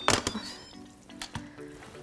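Instant Pot Duo electric pressure cooker lid being unlocked and lifted off after all the pressure has been released: a few sharp plastic-and-metal clicks and clunks at the start, then a quiet hiss from the open pot.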